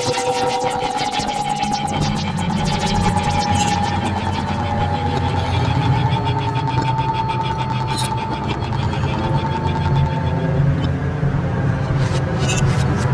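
Algorithmic electroacoustic music made in SuperCollider. A fast stream of clicks runs over a held tone that drifts slightly upward and stops about ten seconds in, with a low hum coming in underneath about two seconds in.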